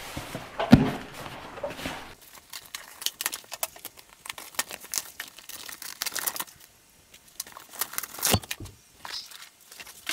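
A cardboard box and its packaging being opened and handled: a string of short scrapes, rustles and clicks, with a thump about a second in and another near the end.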